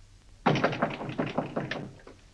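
Knocking on a door: a quick run of raps lasting about a second and a half.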